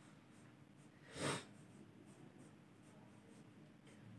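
Marker writing on a whiteboard: faint short strokes, with one louder short breath about a second in.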